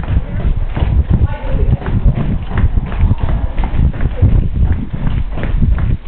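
Running footsteps of several people on the wooden plank deck of a covered bridge: a quick, uneven string of footfalls on the boards.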